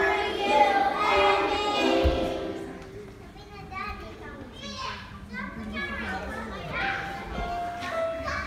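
A choir of young children singing a Christmas song, which stops about two and a half seconds in. Quieter young children's voices then chatter and murmur, and a sung note comes back near the end.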